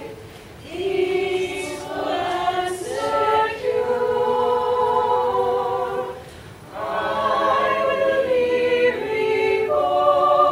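Women's community choir singing, long held phrases broken by two brief pauses: one just after the start and one around six and a half seconds in.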